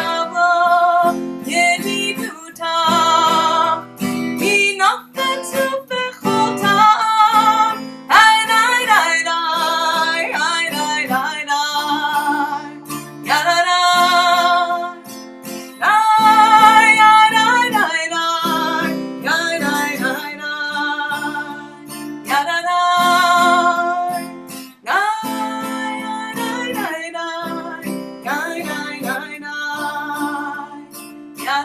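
A woman singing a melody while strumming an acoustic guitar, the chords ringing under her voice.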